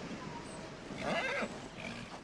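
A horse gives a short whinny about a second in.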